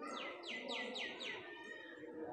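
A bird calling: a quick run of about five sharply falling notes in the first second and a half, over a low background murmur.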